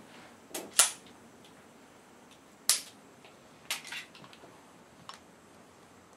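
Sharp metallic clicks and clacks as a Sig Sauer Scorpion 1911 pistol and its magazine are handled, about five in all, the loudest about a second in and near the middle.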